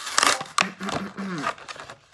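Plastic toy packaging crinkling as it is handled and opened, followed about half a second in by a brief murmur of a voice.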